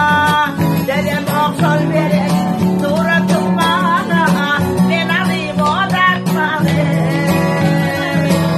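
A classical acoustic guitar played as steady accompaniment while a woman sings a Turkmen song, her voice ornamented with gliding turns and vibrato.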